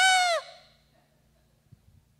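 A man's excited, high-pitched "ah!" shouted into a handheld microphone, imitating a dog's overjoyed greeting: one short cry that rises and then falls in pitch, trailing off within about a second.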